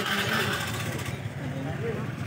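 Indistinct background chatter of several people over a steady low hum, with a brief burst of hissing noise in the first second.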